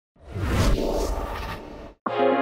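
Whoosh sound effect of a TV intro: a broad rushing swell with a deep rumble that rises out of silence, peaks within the first second and fades away, cut off abruptly at the end.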